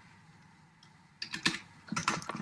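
Typing on a computer keyboard: a quiet first second, then a quick run of separate keystroke clicks.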